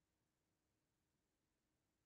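Near silence: the sound track is all but empty, with only a faint, steady noise floor.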